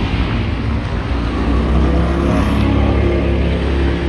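A vehicle engine hums at low pitch, growing louder about a second in and staying strong until near the end.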